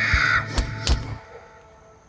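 Dark film-score music with a low drone and sharp hits under a long, high, wailing cry. It all cuts off about a second in, leaving a faint hush.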